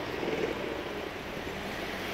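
Steady road traffic noise: the hum of cars on a multi-lane street.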